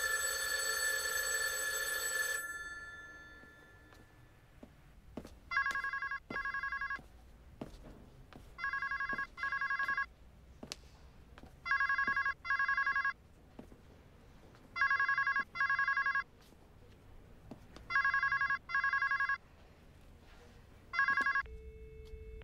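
A telephone ringing in a double-ring pattern, two short rings then a pause, repeating about every three seconds, six times, the last ring cut short. It is preceded by a held tone that fades away over the first two seconds.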